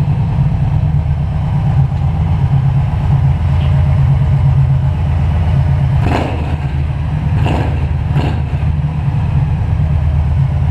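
Kawasaki Vulcan Nomad 1700's V-twin engine idling steadily, with a few brief rustles or knocks about six to eight seconds in.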